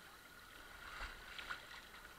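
Faint river water lapping and splashing close by, with a few small splashes starting about a second in.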